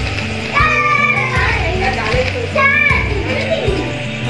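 Children's voices calling out excitedly twice, over background music with a steady beat.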